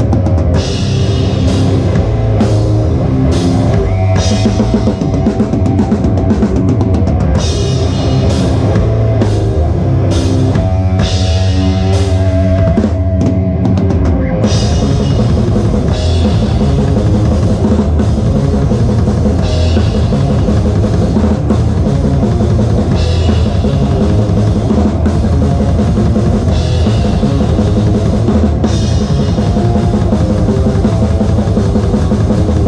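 Death metal played live, heard from over the drum kit: fast, dense kick and snare drumming with Saluda crash cymbals struck at intervals, under the band's distorted guitars and bass. The pattern changes about halfway through, with the cymbal crashes coming further apart.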